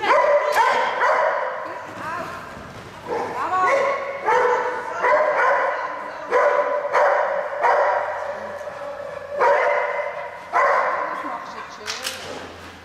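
Dog barking repeatedly during an agility run, loud sharp barks coming singly and in pairs about every second, echoing in a large hall.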